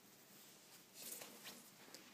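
Near silence, then faint rustling with a few soft taps about halfway through: a person moving about with the camera in hand.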